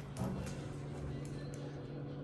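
Otis Hydrofit hydraulic elevator running, a steady machine hum heard inside the car, with a few faint ticks.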